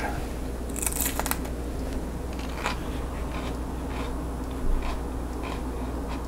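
A crisp bite into a slice of raw green Marconi pepper about a second in, followed by crunchy chewing as a string of fainter, irregular crunches. A steady low hum runs underneath.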